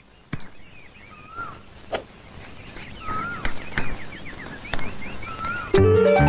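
Birds chirping, with a high steady whistle-like tone in the first two seconds and a few light knocks. Instrumental music starts near the end.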